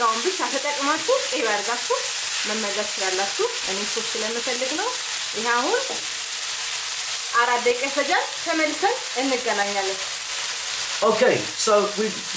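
Lamb, mushrooms and tomatoes sizzling in a non-stick frying pan while a wooden spatula stirs and scrapes them, making short squeaky strokes that rise and fall in pitch throughout.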